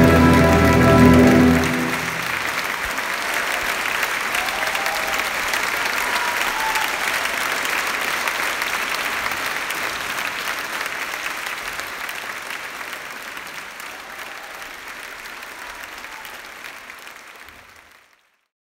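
The final chord of a piece of orchestral music, lasting about the first two seconds, then an audience applauding steadily. The applause fades out gradually over the last several seconds.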